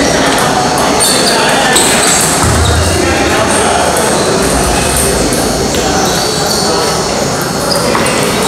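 Table tennis balls clicking off paddles and tables, from several tables at once, over a steady babble of voices in a large echoing hall.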